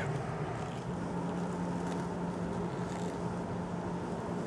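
A steady mechanical hum with a constant low tone, unchanging throughout.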